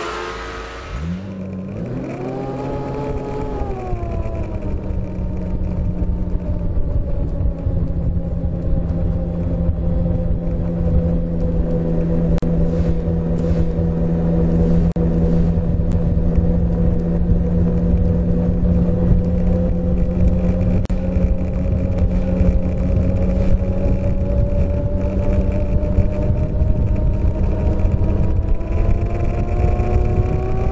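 Snowmobile engine heard from on board a moving sled, over the rumble of the machine running along the trail. The engine revs up and eases off a few seconds in, holds a steady cruising pitch, then climbs again near the end.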